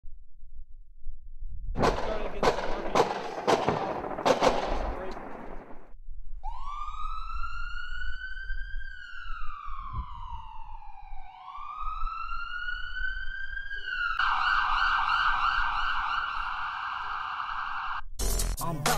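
A few seconds of rough noise with sharp hits. Then a siren wails up and slowly down, rises again, and switches to a fast warble for the last few seconds.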